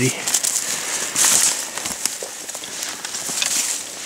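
People walking through brushy forest undergrowth close to the microphone: leaves and branches brushing against clothing and a backpack, with scattered twig cracks and crunches underfoot, and a louder swish of leaves about a second in.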